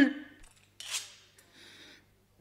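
A man's voice dies away, then two short breathy hisses follow in a pause between lines of a radio play: the actor's breath. A faint low hum from the old recording runs underneath.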